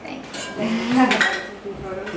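Indistinct voices of people talking in a room, with a few short clicks or clatter.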